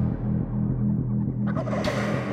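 An eastern wild turkey gobbler gobbling once, a short rattling call near the end, over background music with a repeating beat.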